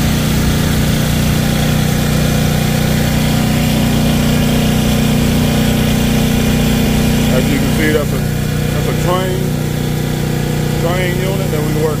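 Portable generator engine running steadily, a constant hum. It eases a little about two-thirds of the way through, with faint voices in the background near the end.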